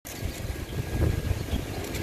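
Steady outdoor street ambience: a low, even rumble of distant traffic.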